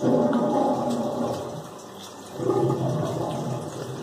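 Two rough, breathy vocal rushes from a man, each about a second long: one at the start and one just past halfway.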